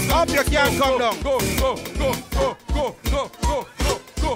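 Upbeat music with a steady bass-drum beat about three times a second and a high pitched line that slides down in pitch on the beats; about halfway through it thins out, dropping away between beats.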